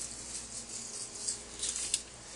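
Soft, irregular wet handling noises of a bullhead catfish's head, skin and innards being pulled down and peeled away from the meat.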